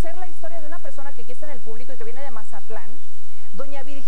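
A woman speaking over a steady background hiss.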